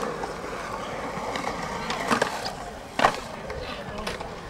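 Skateboard wheels rolling on a concrete skatepark surface, with two sharp knocks of a board hitting the concrete, one about two seconds in and a louder one about a second later.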